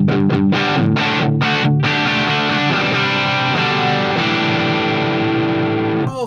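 Electric guitar played through a vintage Sound City 50 valve amp with its mid control turned wide open, driven into a cabinet of ten-inch speakers. Several overdriven chords are struck in the first two seconds, then a chord is left ringing while a few notes shift within it.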